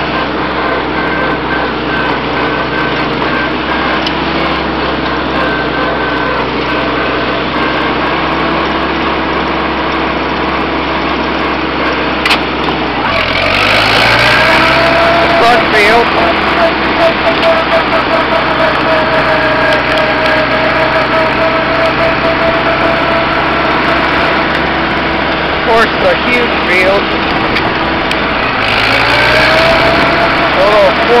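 1956 Farmall Cub's four-cylinder engine running steadily as the tractor is driven. About thirteen seconds in the engine note dips, then climbs and gets louder, and it dips and climbs again near the end.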